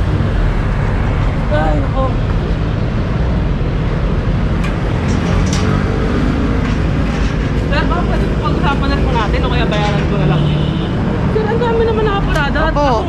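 Steady street traffic noise from passing vehicles, with voices talking off and on over it.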